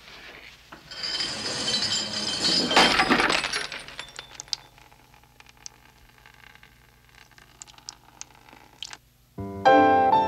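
A crash of breaking glass about a second in, with high ringing and clinking that lasts about three seconds, then scattered small clinks of falling pieces. Near the end an upright piano starts playing.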